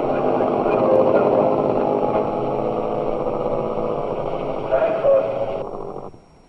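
Engine noise of a group of motorcycles running steadily on an old film soundtrack, thin and band-limited, cutting off abruptly shortly before the end.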